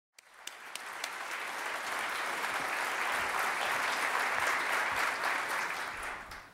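Audience applause in a hall, fading in at the start, building to a steady level and easing off near the end.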